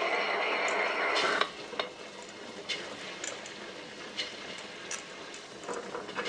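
Tabletop wet grinder running with soaked urad dal going into its drum: a steady whirr for about the first second and a half, then a quieter crackle with scattered ticks as the grains are dropped in by hand and worked under the stones.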